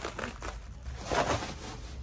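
Clear plastic packaging crinkling as it is handled and squeezed.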